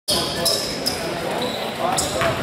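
A basketball bouncing on a gym's hardwood court during play, with several short high squeaks and voices in the echoing hall.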